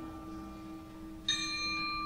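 Sustained tones from a 37-reed sheng and percussion in a contemporary chamber piece. A steady low note and a mid note are held throughout. Just past halfway, a bright cluster of high ringing tones enters with a sharp attack; its top fades quickly and the rest holds on.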